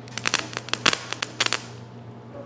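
Jumper cable clamps connected to a battery touched together and sparking: a quick run of sharp snapping crackles that lasts about a second and a half.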